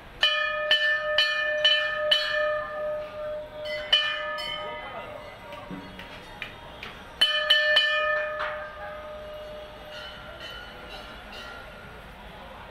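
Large hanging brass temple bell struck by hand, each stroke ringing on. It comes as a run of about five strokes, about two a second, then a single stroke about four seconds in, then another quick run of three about seven seconds in that dies away.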